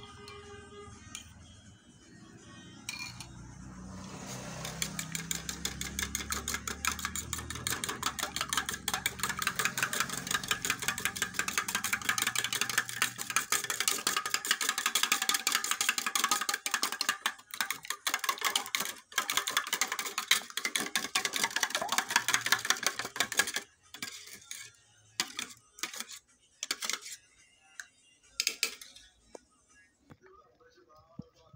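Herbal liquid in a steel bowl being churned vigorously: a fast, dense run of wet swishing and splashing that builds over the first few seconds, stops suddenly past the middle, then comes back in short scattered bursts.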